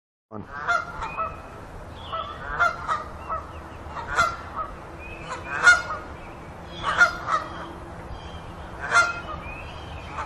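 Geese honking, short calls repeated about once a second.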